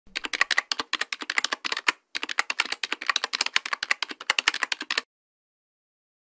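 Rapid computer-keyboard typing, used as a sound effect for text typed onto a title card. It runs in two spells, one of about two seconds and then, after a brief break, one of about three seconds, and stops about five seconds in.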